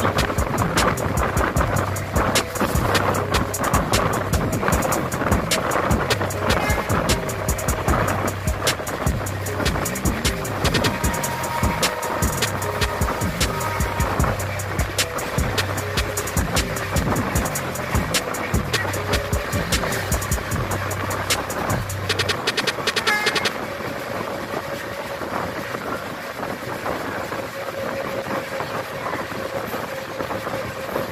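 Background music with a beat and bass line, laid over the running noise of a moving passenger train. About three quarters of the way through, the music becomes softer and duller.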